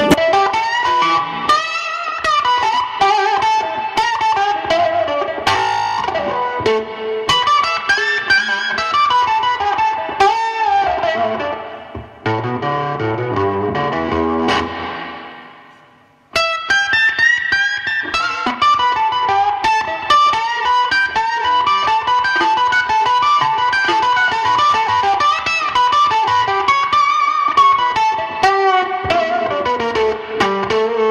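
Electric blues lead guitar from an Epiphone Casino semi-hollow through a Fender amp and an octave fuzz pedal, with wide string bends. About twelve seconds in the playing drops to lower notes and fades out, then cuts back in abruptly a little after sixteen seconds.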